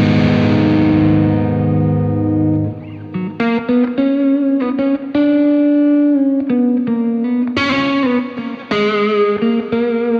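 Electric guitar played through a Carl Martin Blue Ranger pedal with a mid-heavy driven tone: a chord rings and fades over the first few seconds, then a blues lead line of single held notes in short phrases, with a slight waver in the last notes.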